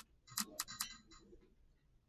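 A sharp mouse click, then a quick run of short ticks over the next second, fading out: the classroom app's random picker shuffling through the class before it lands on a student.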